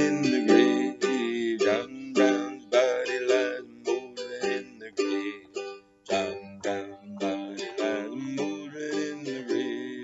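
Ukulele strummed in a steady rhythm, with a man's voice singing along, the words indistinct.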